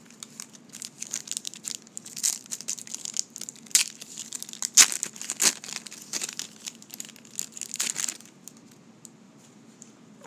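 The wrapper of a 1990 Score football card pack being torn open and crinkled by hand: a run of crackles and rips, sharpest about halfway through, that dies down about two seconds before the end.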